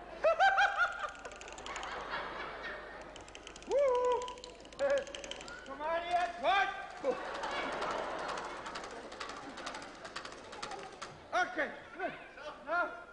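A person's wordless, high-pitched vocal cries: several short calls that rise and fall in pitch, with a rushing noise between them.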